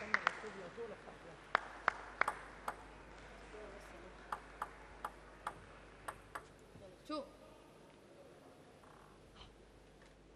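Table tennis ball bounced a number of times before a serve: a string of light, sharp clicks, some close together and some spaced out, fading out after about six and a half seconds.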